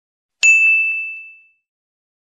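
A single bright 'ding' sound effect, the notification-bell chime of a subscribe-button animation, struck about half a second in and ringing down over about a second.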